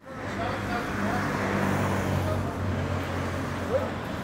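A vehicle engine idling steadily in the street, a low even hum under traffic noise, with faint distant voices now and then.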